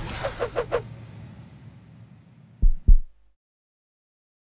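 Two deep thumps in quick succession, like a heartbeat, as the club logo animates on the closing end card; the sound then cuts off completely.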